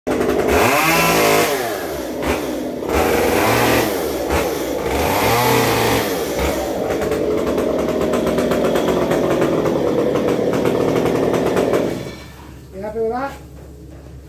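Chainsaw running loudly, revving up and back down several times, then cutting off near the end, where a few words of speech follow.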